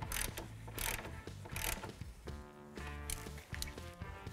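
A ratchet with a 10 mm socket clicking in a few short strokes as bolts are tightened down, in the first half. Faint background music follows in the second half.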